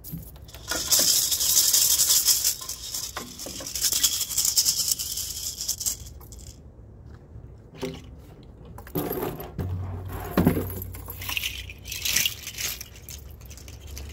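A bright rattling jangle, something shaken hard and continuously for about five seconds, followed by quieter scattered knocks, rustles and a short second burst of rattling near the end.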